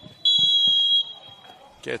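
A referee's whistle blown in one long, steady, high blast that fades away, signalling half-time.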